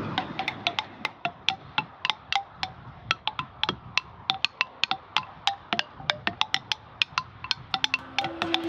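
Hand-built wooden-bar percussion instruments struck with wooden sticks: an irregular run of dry wooden knocks, several a second, each with a short pitched ring.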